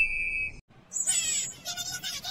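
Sound effects in a break of an electronic meme dance remix: a steady high-pitched beep for about half a second, a brief drop to silence, then a squeaky, hissing effect from about a second in.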